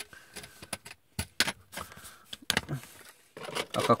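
Scattered light clicks and rattles of hands handling a small plastic toy car's battery cover, just after its screw has been tightened.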